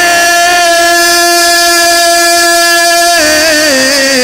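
A man singing a devotional Urdu verse (manqabat) solo, holding one long steady note for about three seconds and then sliding down in pitch.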